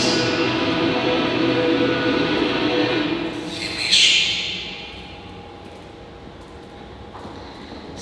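A short film's soundtrack played over a hall's loudspeakers: sustained, drone-like music with a noisy swell about four seconds in, then fading low as the film ends.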